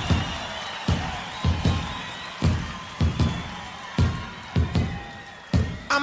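Live reggae band playing the instrumental intro of a song: heavy bass drum and bass hits on a steady beat under sustained higher tones, before the vocals come in.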